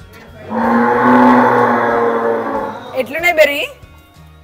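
A calf mooing once: a long, steady call of about two seconds that starts half a second in. It is followed near the end by a brief burst of a person's voice.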